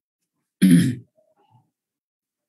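A person clears their throat once, briefly and loudly, about half a second in.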